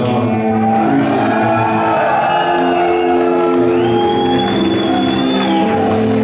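Live rock band playing slow, long-held electric guitar, bass and keyboard chords in a large hall. A high held note slides up about two-thirds of the way through and stops near the end.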